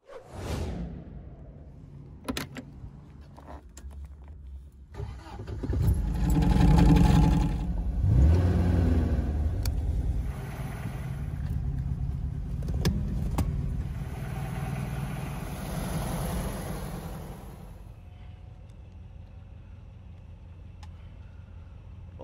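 MGB sports car's four-cylinder engine starting about five seconds in, revved a couple of times, then running steadily before dropping back near the end. A few sharp clicks come before and during the run.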